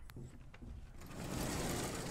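Chalkboard eraser being wiped across a blackboard, a steady scrubbing hiss that starts about a second in.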